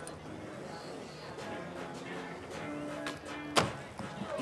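Skateboard rolling on a wooden flat-ground deck under faint music and crowd murmur. A single sharp clack from the board near the end, a nollie full cab flip being popped and landed.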